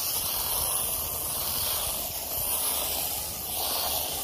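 Jet of water from a hose nozzle spraying onto a rubber entrance mat, a steady hiss, as pre-spray and ice-melt residue are flushed out of it.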